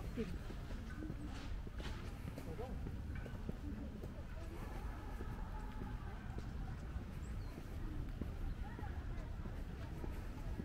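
Footsteps of someone walking on a paved path over a low, choppy rumble, with faint voices of people talking in the background.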